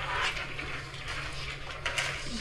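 Room noise in a meeting room: a steady low hum under a soft rustling hiss, with a single click near the end.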